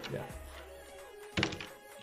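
Computer keyboard keystrokes with one heavier thunk about one and a half seconds in, over quiet background music with steady held notes.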